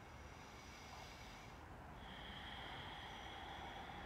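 Quiet pause: faint, steady background hiss, with a faint high steady whine coming in about halfway through.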